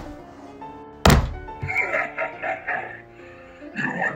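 A heavy thunk of a hit about a second in, over background music.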